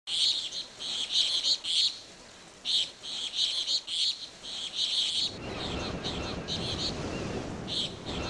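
Birds chirping in quick, irregular bursts of high calls. A low, steady noise joins about five seconds in.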